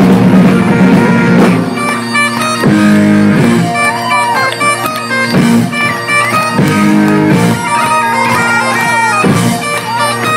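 Bagpipes playing live with a band: the pipes' steady drones sound under the chanter melody, which has quick ornamented turns, and an electric guitar plays along.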